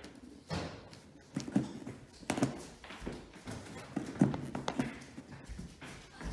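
Irregular light taps and knocks of hands and small craft tools working on paper and cardboard on a wooden table, about half a dozen over a few seconds, with quieter handling noise between them.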